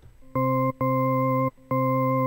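Native Instruments Massive software synthesizer playing the same low, steady note three times, the last one held. The tone is buzzy, with strong overtones.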